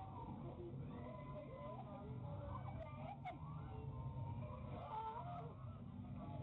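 Several people's high, wavering voices, squeals and shrieks that slide up and down in pitch, over a steady low hum, picked up by a security camera's microphone.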